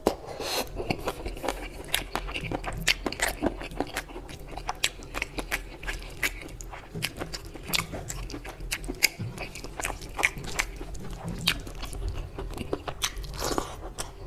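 Close-miked chewing and wet mouth sounds of a person eating mutton curry and rice, with a steady run of sharp smacking clicks, several a second.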